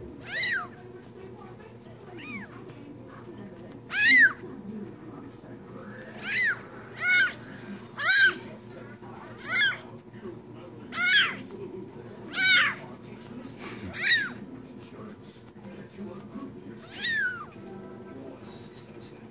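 Very young spotted kitten meowing again and again while being handled: about ten short, high-pitched cries, each rising and falling, one every second or two.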